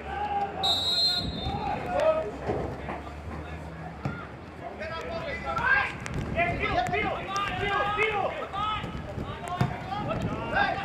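A referee's whistle blows once for kick-off, about half a second long, just under a second in. Then footballers shout calls to one another across the pitch, with a few dull thuds of the ball being kicked.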